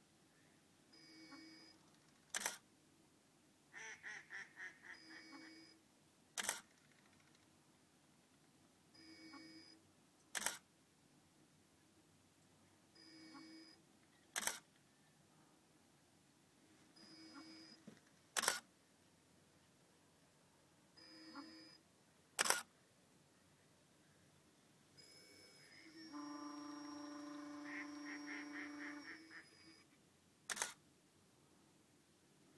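Canon 5D Mark II shutter firing once about every four seconds on a Gigapan Pro robotic panorama head. Before each shot there is a short whir of the head's motors stepping the camera to the next frame. Near the end the motors run longer, for about four seconds.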